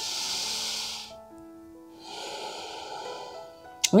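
A woman's slow, deep breaths through the nose: an audible breath lasting about a second, then a softer, longer one, over soft background music of held notes.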